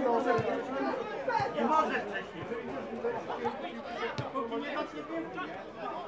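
Indistinct chatter and calls of many voices at a football ground, no single voice standing out. Three short, sharp knocks cut through it, about half a second in, near a second and a half, and after four seconds.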